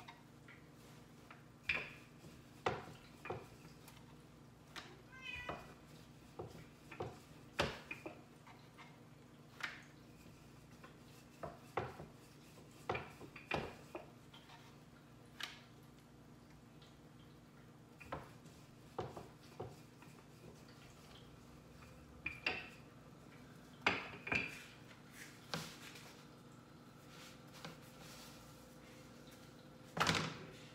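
A wooden rolling pin knocking and clacking on a wooden board as chapati dough is rolled out. The knocks are irregular, about one or two a second, over a low steady hum.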